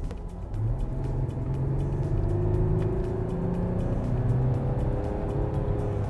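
Audi Q7's 3.0 TDI V6 diesel engine accelerating at full throttle from 60 to 90 km/h, its pitch climbing steadily for about five seconds.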